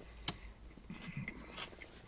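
Quiet chewing of a mouthful of tortilla wrap: faint, irregular mouth sounds, with one sharp click near the start.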